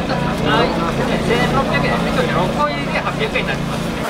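Crowd chatter from many people over a steady low motor hum.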